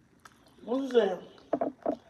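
A person's voice: one drawn-out vocal sound rising and falling in pitch about half a second in, then a few short clipped syllables near the end.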